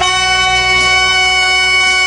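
Live soul band's horn section, saxophone and trumpet, holding one long sustained note after a short rising run, with the bass end thinning out beneath it.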